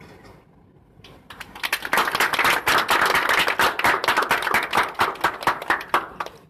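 A group of people clapping their hands close to the microphone, starting about a second in, quickly building to loud, fast, uneven clapping that stops suddenly near the end.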